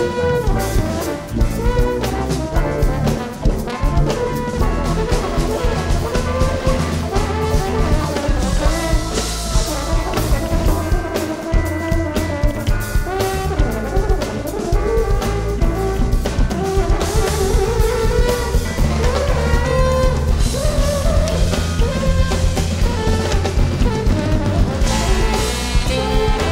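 Live jazz band: a trombone plays a melodic line over a drum kit and the rest of the band, with a steady, busy drum beat.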